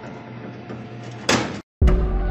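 Sound effect of a steel jail-cell door sliding open: a low rumble as it rolls, then a loud crash about 1.3 s in. After a brief dead silence, a heavy bass music hit starts near the end.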